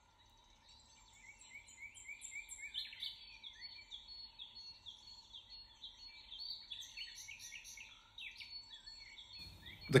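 Several small birds singing and chirping together, faint, starting about a second in: quick runs of short, repeated falling notes overlapping one another, over a faint steady hum.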